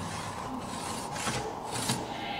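Faint rubbing and scraping strokes of a body moving across a stage floor, a few short ones spread over two seconds, with the tail of a deep drum boom dying away at the start.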